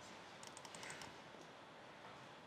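Faint keystrokes on a computer keyboard: a few soft clicks about half a second to a second in, over quiet room hiss.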